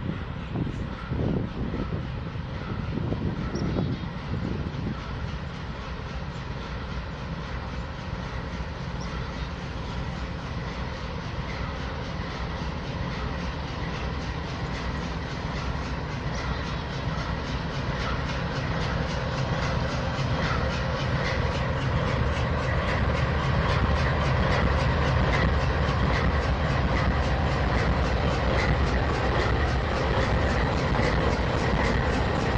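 Norfolk Southern GE AC44C6M diesel locomotive hauling a rock ballast train: engine running and wheels rolling on the rails, growing steadily louder as it draws near and passes, with a quick clicking of wheels over the rails in the second half.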